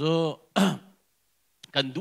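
A man speaking into a handheld microphone stops after half a second with a short throat-clear. There is a pause of about a second before he goes on speaking.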